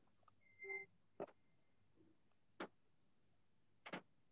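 Near silence: faint room tone with soft clicks about every second and a half, and a brief faint squeak about half a second in.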